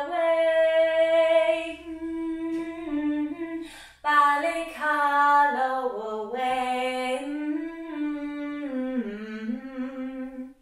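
A woman singing unaccompanied: long held notes at first, then after a short breath a phrase that steps downward in pitch.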